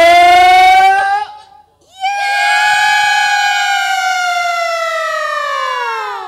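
A sinden's high sung voice holding long notes: a wavering note that breaks off about a second in, then after a short gap a long held note that slides down in pitch near the end.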